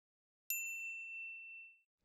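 A single bright ding, a bell-like chime sound effect, starting about half a second in and ringing out, fading over about a second and a half.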